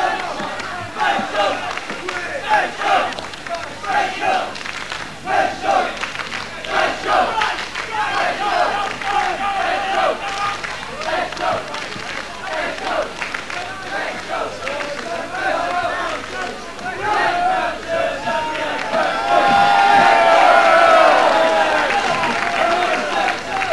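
Gig crowd shouting and chanting, many voices at once, swelling into a louder massed shout near the end.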